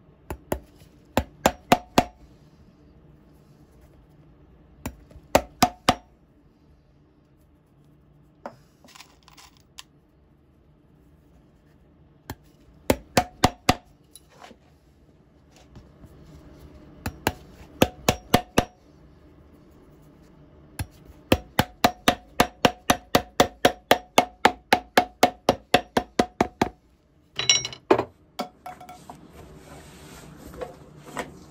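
Shoemaker's hammer tapping small nails through a boot's midsole into the welt, in short bursts of quick sharp taps with a slight ring. The longest run is an even series of about fifteen taps near the end, followed by a brief clatter.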